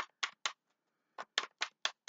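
A tarot deck being shuffled by hand: a series of sharp snaps of cards slapping together, three quick ones, a short pause, then four more.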